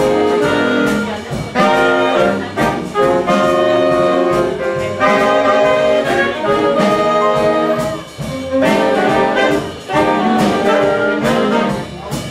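Jazz big band playing live, the brass and saxophone sections together in loud ensemble phrases with brief breaks between them.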